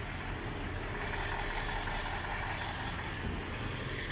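Steady low rumble of road traffic, with a car engine running close by.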